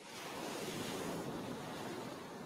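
A single ocean wave washing in: a rushing hiss of surf that swells up over about half a second, holds, and begins to fade near the end.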